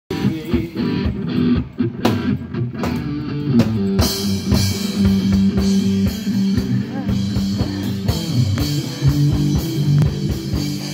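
Live rock band playing: electric guitar over a drum kit, the sound getting fuller from about four seconds in.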